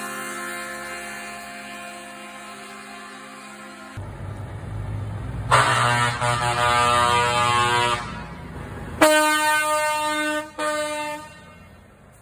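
Air horns of passing show trucks: a horn chord fades away at first, then a truck's engine comes close and it gives a long horn blast, followed a second later by another loud blast that breaks briefly and stops near the end.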